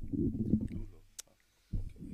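Low, muffled rumbling handling noise from a microphone stand being adjusted, with a sharp click about a second in and a low thump near the end.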